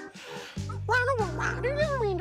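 A puppet creature's wordless vocal call that rises and then falls in pitch, starting about a second in, over background music.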